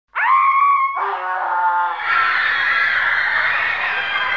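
Screams: a single high shriek held steady, then from about a second in a lower held scream, then from about two seconds many screams layered together in a steady wall of sound.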